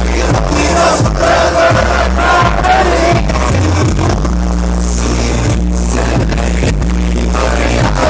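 Loud live music over a concert sound system, heard from inside the crowd: heavy sustained sub-bass under a wavering melodic vocal or synth line, with a few brief drop-outs in the beat.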